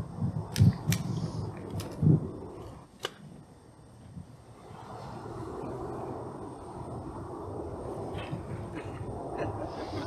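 A pause filled by a few sharp clicks and soft low thumps in the first three seconds, then a steady low background hum.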